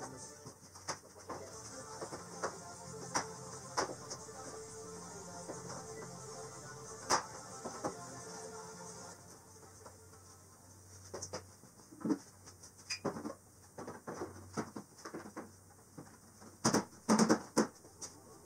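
Plastic body panels of a Can-Am Maverick X3 being handled and fitted back on, with scattered knocks and clicks that come more often and louder in the second half. Faint music runs underneath.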